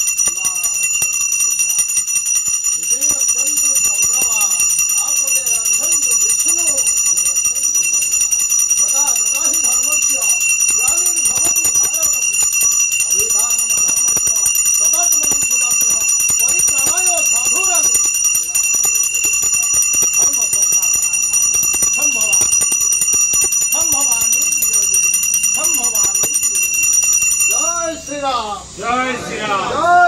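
A temple bell rung without a break, giving a steady high ringing, over voices chanting. The ringing stops suddenly at the very end.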